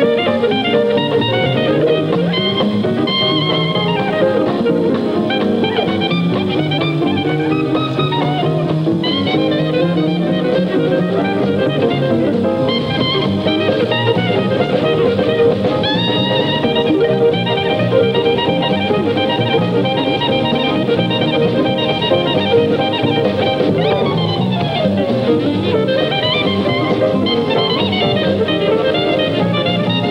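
Dixieland jazz with a clarinet lead over a small rhythm section of guitar, piano, string bass and drums, playing without a break.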